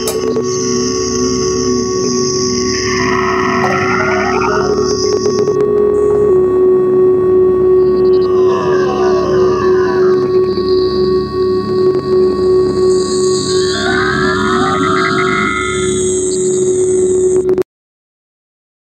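Electronic dance music outro: the drums drop out, leaving a held synth drone under higher synth tones that sweep in and out. It cuts off suddenly near the end.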